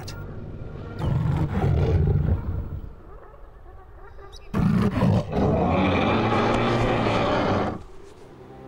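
Big-cat roars voicing a re-created scimitar-toothed cat: one lasting a couple of seconds starting about a second in, then a longer one from midway until just before the end.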